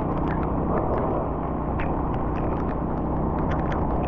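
Steady road noise from a vehicle travelling on a rain-wet highway: a low engine hum under tyre and wind rumble, with many short ticks scattered throughout.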